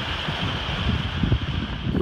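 Water rushing and splashing along the hull of a sailboat running downwind, with wind buffeting the microphone as a fluctuating low rumble.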